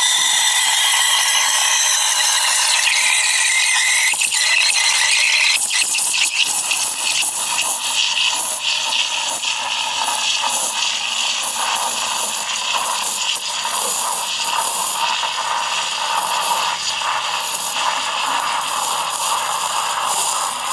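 Rancilio Silvia V3 steam wand hissing into milk in a stainless steel frothing pitcher. About six seconds in the hiss changes and turns uneven and crackly as the milk steams.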